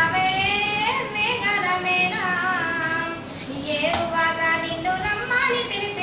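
A young woman singing solo in a high voice, holding long notes and bending them with ornaments, with a short breath pause about three seconds in.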